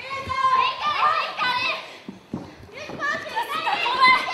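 High-pitched voices shouting and calling out, several at once, with long-held calls in the first half and more after a short lull.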